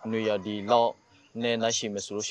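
A man speaking into a close microphone, in bursts with a short pause about halfway through.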